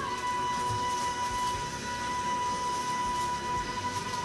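A female pop singer holding one long, steady high note over orchestral backing, in a live concert recording.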